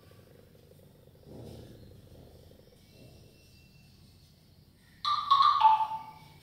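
Faint room tone, then about five seconds in a loud, squeaky burst of a marker writing across a whiteboard, lasting about a second.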